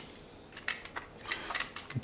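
A few light clicks and taps from handling a small aluminium-cased LED panel against a camera body, starting about half a second in.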